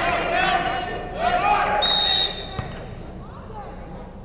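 A basketball being dribbled on a hardwood gym floor, with players' shouted calls echoing in the hall. There is a brief high squeal near two seconds in, after which it quietens.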